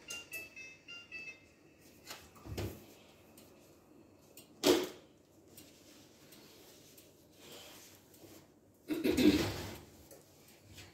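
An oven control panel beeping a quick run of short electronic tones at shifting pitches, then knocks and clatter as the oven and cake pan are handled. The loudest are a sharp knock about five seconds in and a clatter near the end.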